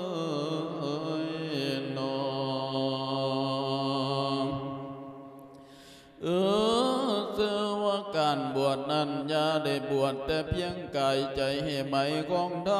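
A Buddhist monk chanting a sung Isan-style sermon (thet lae) into a microphone. He holds one long drawn-out note that fades away about five seconds in. A new phrase then opens with a rising pitch and runs on in quicker chanted syllables.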